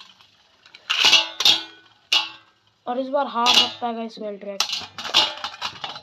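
Beyblade spinning tops, a Slash Valkyrie among them, clashing and clattering in a steel kadhai, giving several sharp metallic clinks that ring off the pan, the loudest about a second in and a quick run of them near the end as one top is knocked to a stop.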